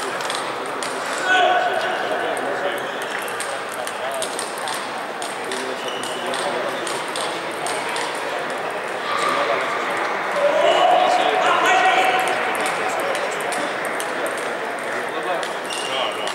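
Sports-hall din of a table tennis tournament: table tennis balls clicking off bats and tables at many tables, over a general chatter of voices. Voices stand out louder about a second in and again around ten to twelve seconds.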